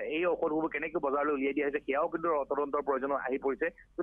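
A man talking continuously over a telephone line, the voice thin and narrow in tone.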